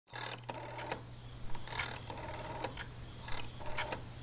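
Rapid mechanical clicking in short repeated runs, over a steady low hum.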